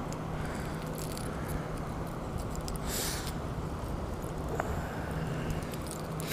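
A popper's treble hooks being worked out of a smallmouth bass's mouth by hand: a brief rustle about halfway and a small click a little later, over a steady background rush.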